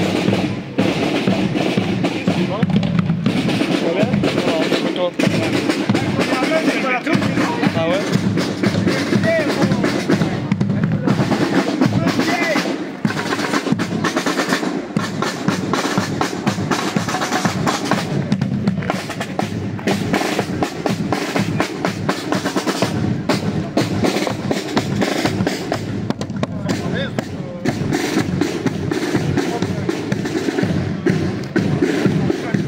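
A group of marching snare drums playing a continuous, steady marching beat.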